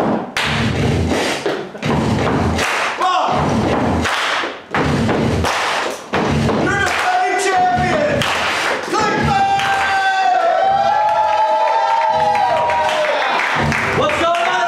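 Loud thuds with shouting voices, giving way about six seconds in to long, wavering held vocal notes that last to the end.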